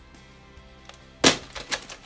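A sharp plastic knock about a second in, then two lighter clicks, as a Nerf blaster is handled and put down, over faint background music.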